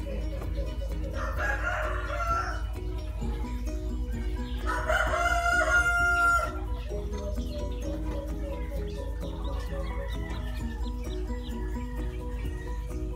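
A rooster crowing twice: a shorter, fainter crow about a second in, then a louder, longer crow about five seconds in. Background music with a steady beat plays throughout.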